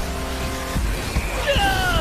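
Battle soundtrack of a fantasy animation: music holding a chord, then, about one and a half seconds in, a high squealing whine that slides down in pitch, a magic-attack sound effect.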